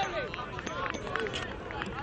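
Several voices calling out over one another, with scattered short knocks.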